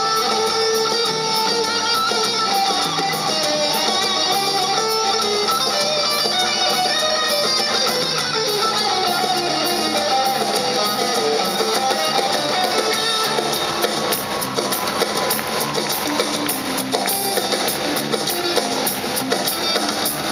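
Electric guitar played lead over a live rock band with drums.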